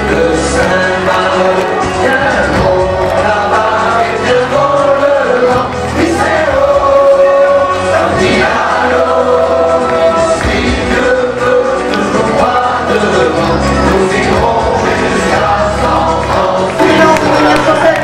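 A loud song with a group of voices singing together over a steady bass line.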